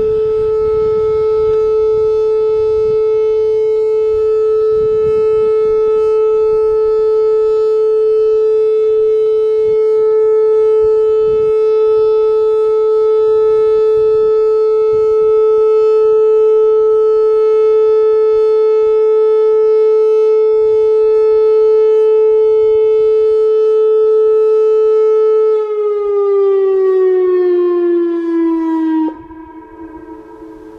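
Whelen 2905 electronic outdoor warning siren sounding one steady tone. A few seconds before the end the pitch slides downward, and then the tone cuts off suddenly.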